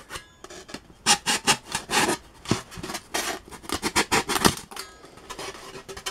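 Razor saw cutting through a block of hard-grade balsa foam with quick back-and-forth strokes, about two to three a second, starting about a second in.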